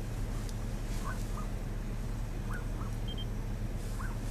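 Steady low mechanical hum of an idling engine. Faint short rising chirps come in pairs, about every second and a half.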